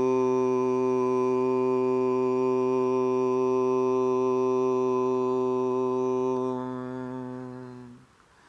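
A man's voice chanting one long Om, held steady on a single low note, its hum tapering away near the end.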